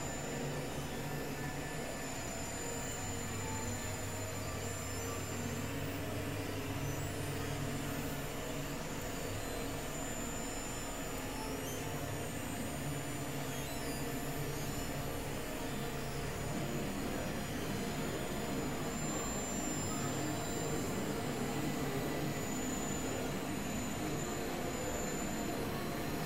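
Experimental electronic noise drone from synthesizers: a dense, steady mass of noise with low drone tones shifting underneath and a thin high whine that comes and goes.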